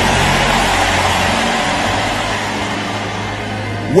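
A congregation shouting and cheering in response to a prayer declaration: a loud, steady roar of many voices that slowly fades, over a held low note from the service's background music.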